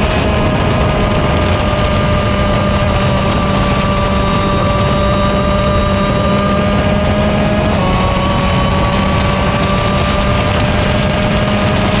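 125cc single-cylinder two-stroke shifter kart engine running hard at high revs, recorded onboard. Its note sags slowly, drops in a small step about eight seconds in, then climbs again, over steady wind and tyre noise.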